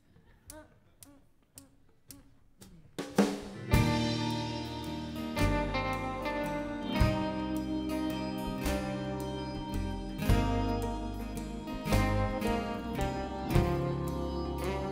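A few seconds of quiet with faint clicks, then a live folk-pop band starts an instrumental intro about three seconds in: acoustic guitar, upright bass, piano and mandolin over a drum kit, with no singing.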